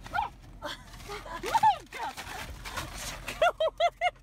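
A woman shrieking and laughing, with noisy scuffles among the cries. It ends in a quick run of about four short 'ha' bursts.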